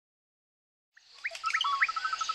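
Jungle ambience fading in about a second in: birds chirping with short rising whistles and a rapid run of even pips, over a steady high hiss.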